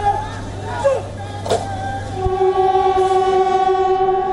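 A ceremonial horn sounding long, steady notes held for a second or more, with short gliding notes between them. A single sharp crack sounds about one and a half seconds in.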